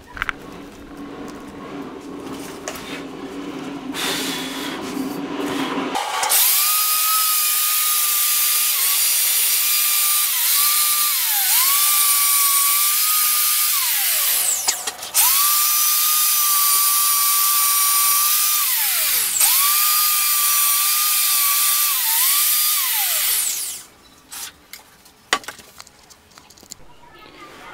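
Power tool spinning a cup brush against a bicycle frame to strip off old paint: a high motor whine with a hissing scrub, its pitch dipping each time the brush is pressed onto the tube. It runs in two long spells with a brief stop in the middle, and winds down near the end, after a quieter, lower start.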